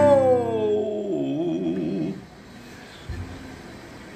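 A man's voice holding the final sung note of a country song, sliding down in pitch with a wavering vibrato like a howl, and ending about two seconds in.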